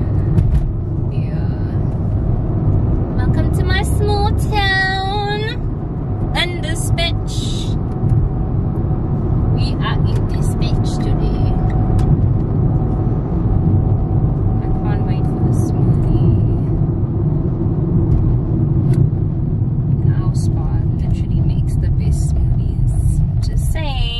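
Steady low rumble of a car on the move, heard from inside the cabin. About four seconds in, a woman's voice gives a drawn-out, wavering vocal sound.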